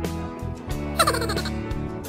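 Background music with a short comic sound effect about a second in: a loud, rapidly fluttering call that falls in pitch over about half a second.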